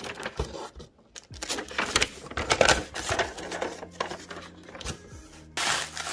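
Kraft packing paper rustling and crinkling in irregular bursts as it is unfolded and pulled open inside a cardboard box. Near the end comes a louder, denser crinkling of plastic bubble wrap.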